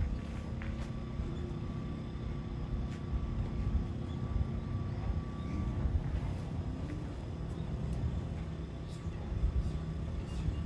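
A steady low rumble of outdoor background noise, with faint steady hum tones above it.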